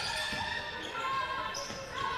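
Court sound of a basketball game on a hardwood floor: a ball bouncing amid players' footwork, with music playing in the hall.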